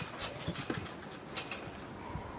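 Faint soft knocks and light rustling from children and a rubber space hopper ball moving on a trampoline mat.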